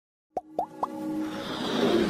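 Animated-intro sound effects: three quick plops, each sliding up in pitch and each a little higher than the last, about a quarter second apart, then a swelling whoosh with a held tone that grows louder.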